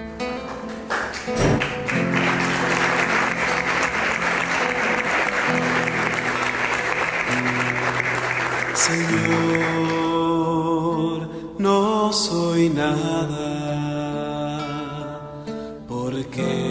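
Applause from a congregation for about nine seconds over acoustic guitar music, then the guitar music carries on alone.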